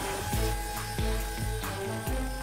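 Background music with a steady pulsing bass beat, about three beats a second, under held tones.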